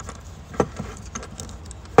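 Hard plastic clicks and knocks as a valve with its seal is pushed into the body of a Caleffi DirtMag Mini magnetic filter: one sharp click about half a second in, a few small ticks, and a louder snap near the end. The fitting goes in stiffly.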